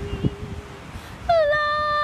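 A woman singing a cappella: a soft, quiet note at first, then, a little over a second in, a loud held note that dips slightly in pitch and then holds steady.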